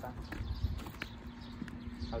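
Footsteps on pavement: a few light ticks over a low rumble and a faint steady hum.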